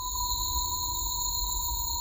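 Steady electronic drone of several held, unchanging high tones over a low rumble, used as a background sound bed.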